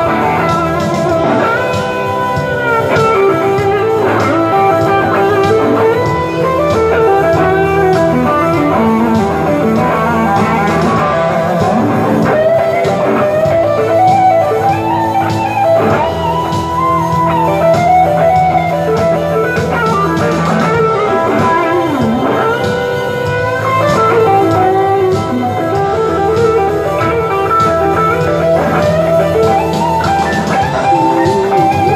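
Fender Ultra Stratocaster electric guitar played lead through Fender Tone Master Twin Reverb and Deluxe Reverb amps, with bent notes and vibrato over steady low notes.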